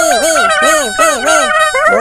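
Several cartoon characters chattering and cheering excitedly at once in high-pitched gibberish voices, their overlapping calls rising and falling rapidly.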